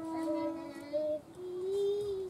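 A child's voice holding long sung notes: one steady note for about a second, a lower one after it, and a slightly rising note near the end.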